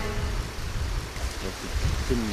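Steady rushing of a fast-flowing river.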